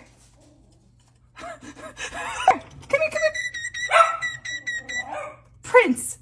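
A small pet bird chirping and whistling. After a quiet first second and a half, a run of short gliding calls begins, with a steady high whistle note held in the middle.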